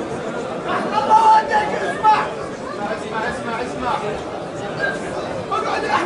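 A crowd of men's voices talking and calling out over one another, with louder raised calls about one and two seconds in.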